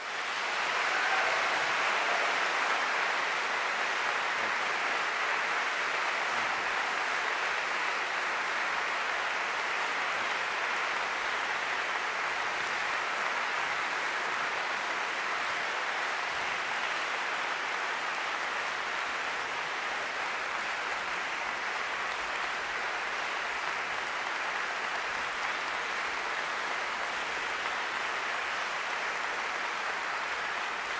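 Large audience applauding. The clapping starts suddenly, swells within the first second or two, then holds steady.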